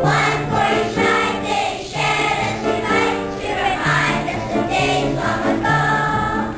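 Children's choir singing a Christmas song in unison, with low accompanying notes held beneath the voices.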